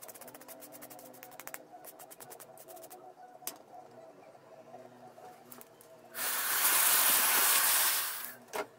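Light clicks and taps of a hard-drive circuit board being handled, then near the end about two seconds of loud, steady hissing like rushing air or spray, which stops sharply.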